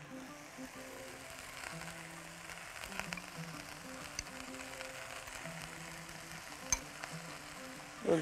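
Diced vegetables sizzling quietly in a frying pan, with a few light clicks of a metal spoon against a glass bowl as diced potatoes are tipped in.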